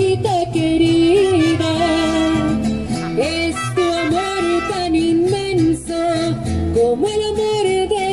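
Mariachi group playing an instrumental passage: a trumpet carries the melody in long held notes with slides between them, over guitarrón bass and strummed guitar.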